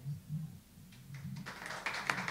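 A short lull with faint room noise, then a small audience starts clapping about one and a half seconds in.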